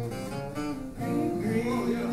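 Acoustic guitar strummed, with a voice singing along.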